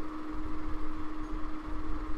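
Steady background noise under a pause in speech: a constant low hum with a rumble beneath it and a faint hiss.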